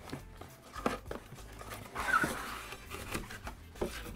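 Cardboard box lid being worked open and lifted: scattered light clicks and scrapes of the cardboard flap, with a rustle about two seconds in.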